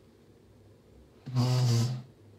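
Butter slime stretched into a thin sheet gives one short, buzzy, fart-like sound a little over a second in, lasting about half a second as air is squeezed through it.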